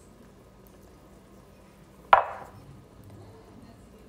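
A single sharp knock about two seconds in that dies away quickly: a small bowl of cinnamon set down on a wooden tray.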